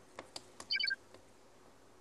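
Clay poker chips clicking and clinking as a stack is pushed out for a call: a couple of light clicks, then a quick cluster of short ringing clinks about three-quarters of a second in.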